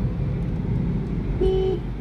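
Steady road and engine noise inside a moving car's cabin, with one short horn toot about one and a half seconds in.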